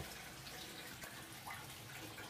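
Faint, steady trickle of water running through a Gold Cube concentrator and into its discharge tub on the recirculating tank.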